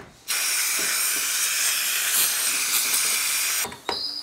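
A steady, loud hiss like a pressurised jet of air or spray, starting and stopping abruptly and lasting about three and a half seconds, followed by two short clicks near the end.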